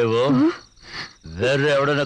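A man's voice, low and drawn out, stopping for about a second in the middle, with crickets chirping steadily behind it.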